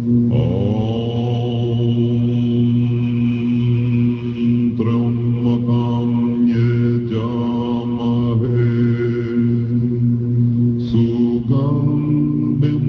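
A group chanting Tibetan Buddhist prayers in low, deep voices, holding steady pitches as a drone. A voice slides up in pitch to join the chant about half a second in. It was captured on a hand-held tape recorder.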